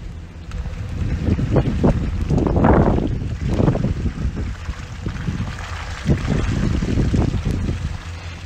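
Pickup truck creeping along a wet gravel and mud road: a steady low engine rumble with the tyres rolling over the gravel in uneven swells, and wind on the microphone.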